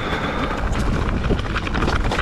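Mountain bike rolling down a rocky trail: tyres crunching over loose stones and dry leaves, with many quick rattling knocks from the bike and a steady low rumble of wind on the microphone.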